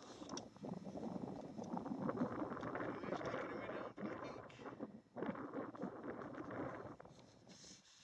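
Wind buffeting the camera's microphone in uneven gusts, dropping away near the end.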